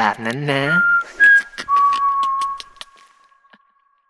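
A person whistling two short notes and then one long held note that fades out a little past three seconds in, with a few light clicks alongside.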